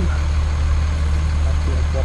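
Fire engine idling, a steady low hum.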